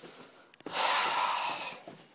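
A person's long, breathy exhale close to the phone's microphone, starting a little over half a second in and lasting about a second.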